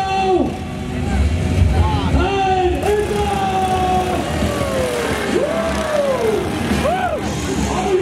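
Several Royal Enfield motorcycle engines revving hard off the start line of a dirt-track race, their pitch swelling up and falling back again and again.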